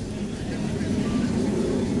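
A low, noisy outdoor rumble that grows gradually louder, with no clear rhythm or tone in it.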